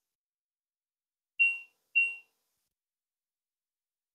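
Anritsu MS2721B spectrum analyzer giving two short, high electronic beeps of the same pitch about half a second apart, as its tracking generator self test runs.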